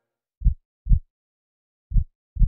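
A slow heartbeat sound effect: deep, paired lub-dub thumps, one double beat about half a second in and the next starting near the end, about a second and a half apart.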